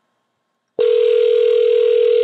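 Telephone ringback tone of an outbound call placed from a browser softphone: one steady ring tone that starts about a second in, the sign that the called phone is ringing.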